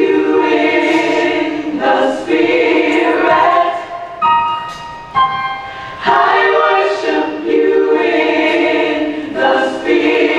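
Gospel music with a choir singing in loud phrases, dipping to quieter held notes about halfway through before the full choir comes back in.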